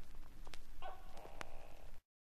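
An animal calls twice, each call under a second long, with sharp clicks in between, as the recording's night-time sound effects fade out.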